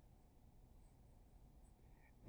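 Very faint pencil scratching on paper as an answer is written out and boxed.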